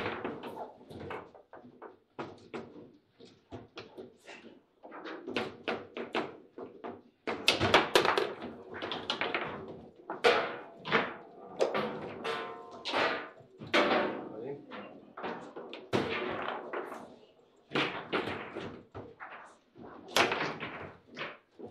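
Foosball being played: a run of sharp, irregular knocks as the ball is struck by the players' figures and hits the table walls, with the rods clacking against their bumpers. It includes a shot into the goal.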